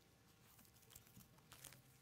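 Near silence, with a few faint, brief rustles of thin Bible pages being turned by hand.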